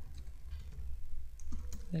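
Typing on a computer keyboard: a few scattered key clicks.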